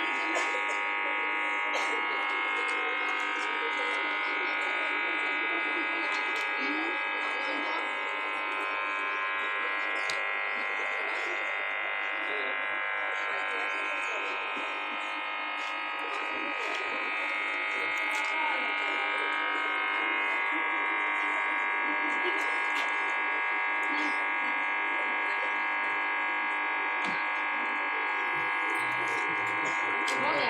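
A steady buzzing drone made of several held tones, unchanging throughout, with voices underneath.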